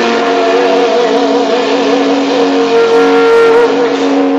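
Distorted electric guitar holding long, sustained notes in a live heavy metal performance, wavering with vibrato at first and then steady, with a higher note joining about halfway through and no drum beat.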